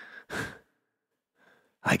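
A man's audible breath, like a sigh, into a close microphone, lasting about half a second; speech starts near the end.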